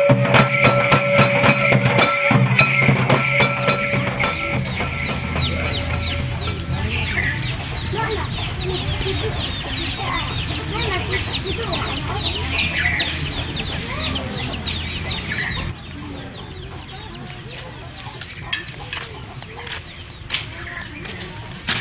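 Barrel drum beaten in a steady rhythm with a held tone above it, fading out about six or seven seconds in. After that come many short, high, falling bird chirps. These stop abruptly about sixteen seconds in, leaving quieter outdoor sound with a few scattered knocks.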